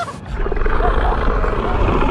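Film sound of being underwater: a deep, muffled rumble that sets in suddenly, with the high end cut off.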